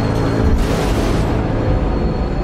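Dark film-score music: a loud, sustained low brass chord, the 'braam' sound, over a deep rumble. A noisy swell rises through it about half a second in.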